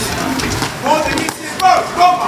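Boxing crowd shouting in a large hall, with a few sharp thuds of punches landing during an exchange against the ropes.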